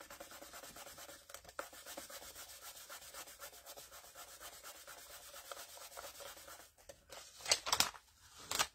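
Fingers rubbing a sheet of newspaper against cardstock in faint, quick, even strokes to transfer the print. Near the end comes a short, louder paper rustle as the newspaper is peeled up.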